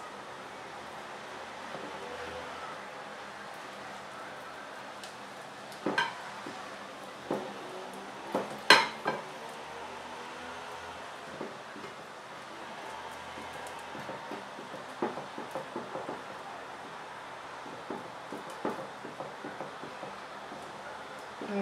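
Fingers rubbing butter over a ceramic baking dish, with scattered light taps and clicks against the dish and a sharper knock about nine seconds in, over a steady faint hiss.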